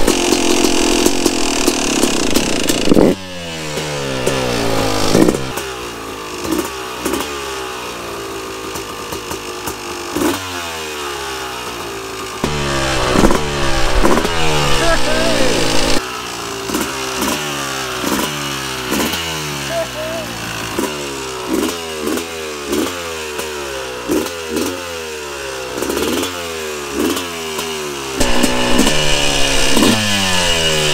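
Yamaha YZ250 two-stroke single-cylinder dirt bike engine running just after being started, blipped again and again so the revs rise and fall back each time, about once a second in the second half.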